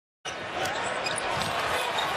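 Live basketball game sound: a basketball bounced on the hardwood court over steady arena crowd noise, starting after a moment of silence.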